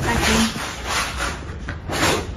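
Rubbing and rustling noise, like a handheld phone brushing against fabric as it is moved, with a brief voice sound about a third of a second in.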